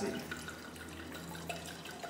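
Red wine being poured from a bottle into a stemmed wine glass: a faint, steady trickle of liquid.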